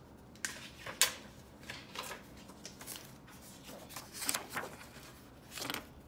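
A sheet of paper and a metal ballpoint pen being handled: a handful of short rustles and light taps, the loudest about a second in and again just after four seconds.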